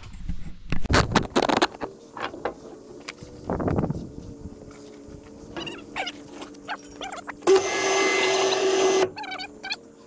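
A utility vehicle's engine idling with a steady low hum, after knocks and rattles in the first couple of seconds. Near the end a winch motor runs loud for about a second and a half, pulling the cable that stretches the fence wire.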